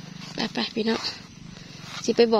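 A person's brief voiced sounds about half a second in, over a steady low hum.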